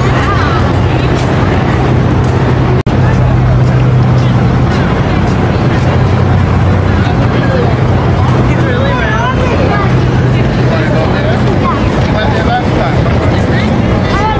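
Background chatter of passers-by over a steady low hum and noise. The sound drops out sharply for an instant about three seconds in.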